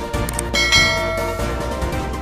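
Background music with a bright bell ding a little under a second in that rings out for about half a second: a notification-bell sound effect, preceded by two faint ticks.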